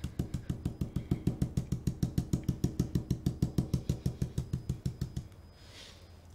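A dome stencil brush stippling paint through a stencil onto a wood sign: rapid, even taps about eight a second that stop about five seconds in.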